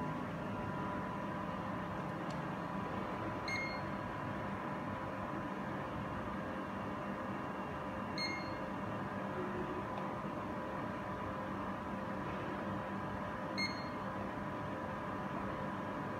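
Zeiss Contura coordinate measuring machine giving three short high beeps about five seconds apart, each as its probe stylus touches the aluminium part and a measuring point is taken, over a steady hum.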